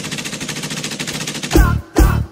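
Rapid machine-gun fire used as a sound effect in a music track, a fast even rattle lasting about a second and a half. Then the song's heavy beat and a singing voice come back in.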